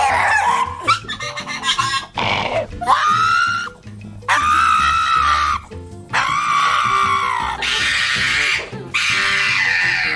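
Pugs making ungodly noises: a string of long, high-pitched cries, one after another, each lasting about a second or more. Background music plays underneath.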